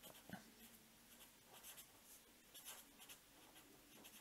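Faint scratching of a felt-tip fineliner writing on paper, in short strokes, with a soft knock just after the start.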